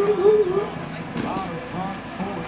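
A man's voice, the rodeo announcer's, laughing and talking briefly.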